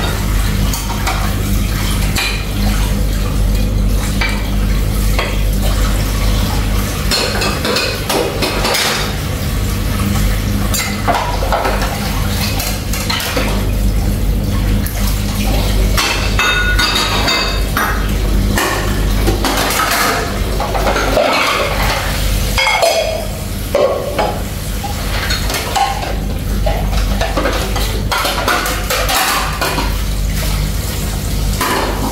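Hand-washing dishes at a sink: ceramic plates and bowls clinking and clattering against each other and a stainless steel basin, over and over, with tap water running into a bowl.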